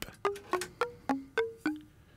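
Eurorack modular synth patch through a Mutable Instruments Rings resonator, playing a random sequence of short mallet-like struck notes about four a second, each dying away quickly, the pitch jumping from note to note. A modulation on the shape is changing the timbre of the notes.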